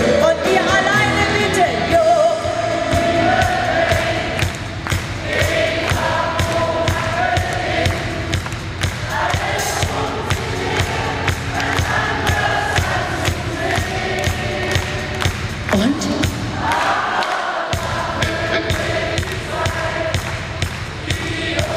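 Live pop band playing a song with a steady beat, with a woman singing lead and massed voices singing along. The bass drops out for about a second near the end, then the band comes back in.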